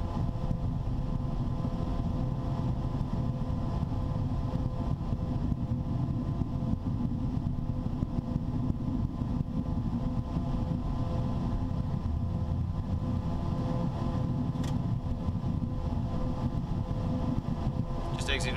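Steady low-pitched noise inside the cockpit of a Cessna Citation Sovereign business jet rolling along the runway and turning off onto a taxiway: its engines' steady hum with faint steady tones over the rumble of the rollout. A single sharp click about fifteen seconds in.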